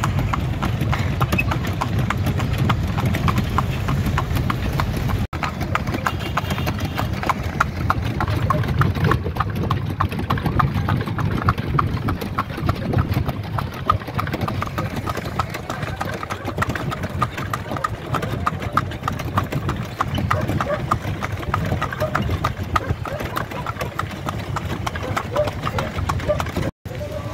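A horse's hooves clip-clop steadily on a paved city street as it pulls a tonga, a horse-drawn cart. Traffic and voices sound in the background.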